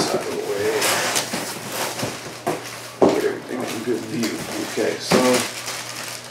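Cardboard box and packaging being handled: rustling and scraping of the flaps, with a sharp thump at the start and another about three seconds in. Low, wavering voice-like sounds come in between, around the middle and again near five seconds.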